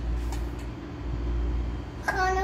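A low steady hum and rumble, with a faint clink right at the start.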